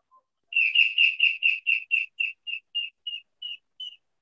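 A bird calling: a run of about fifteen short, high chirps at one pitch, quick at first, then slowing and fading.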